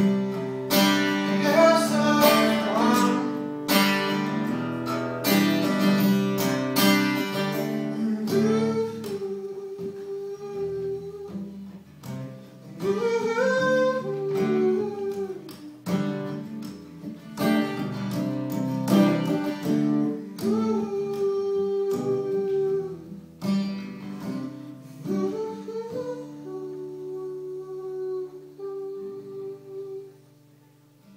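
Acoustic guitar strummed with a man's voice singing over it, live in a small room. Near the end the playing thins to a held chord that rings and fades out as the song finishes.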